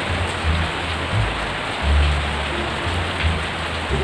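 Steady rain, a dense even hiss, with low rumbling underneath.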